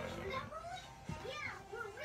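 Background music with voices, such as a television playing in the room.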